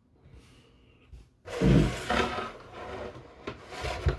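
Pieces of a toy diorama set being handled and set in place on a desk. There is a sudden rubbing, scraping rustle about a second and a half in that tapers off, and a couple of light knocks near the end.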